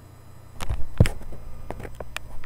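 Handling noise as the camera is jostled: a few sharp knocks, a heavier thump about a second in, then lighter clicks.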